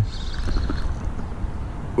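Wind rumbling on the microphone, with a faint whir of a spinning reel being cranked against a hooked fish.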